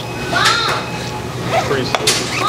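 Children's voices calling out over background chatter in a busy room.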